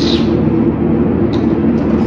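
A steady low hum, as of a running machine, with a short hiss at the start and a faint click a little past the middle.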